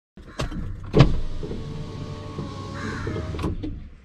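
Inside a car: two sharp thumps, the second the loudest, then a power window motor whirring for about two seconds and stopping with a knock, while crows caw in the background.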